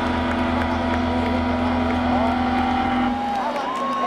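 A steady low amplified drone through the concert PA, cutting off about three seconds in. Whistle-like tones glide up and hold over it near the end.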